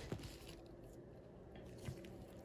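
Quiet room tone with a faint click early on and a short, soft tap near the end, as a gloved hand reaches for a nickel lying on the microscope's grid stage.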